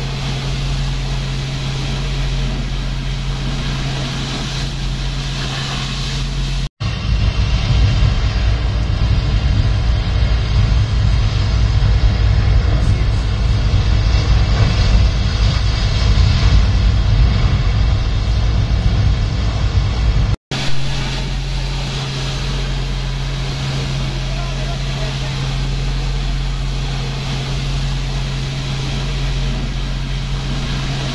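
Engine of a fire-fighting boat's pump running steadily under the hiss of its water cannon. A little over a quarter of the way in it cuts abruptly to a louder, deeper rumble, and about two-thirds of the way through cuts back to the steady engine and spray.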